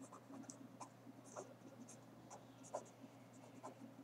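Faint scratching of a pen writing on paper in short, irregular strokes, over a low steady hum.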